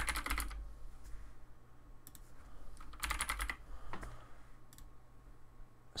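Computer keyboard typing: a short burst of keystrokes at the start, a few single key taps, and another short burst about three seconds in.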